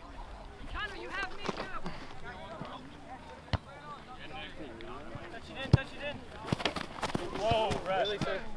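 Distant shouting from players on an open soccer field, with two sharp thumps about three and a half and six seconds in, the second the louder.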